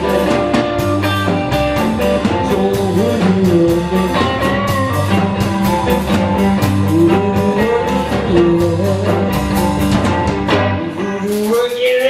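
Live heavy electric blues-rock band: two distorted electric guitars play bending lead lines over bass and drum kit, with a man singing. The low bass end drops out briefly near the end.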